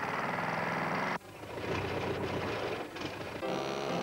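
Cartoon sound effect of a small truck's motor, a fast rattling run that cuts off suddenly about a second in, followed by a softer clatter. Musical notes start near the end.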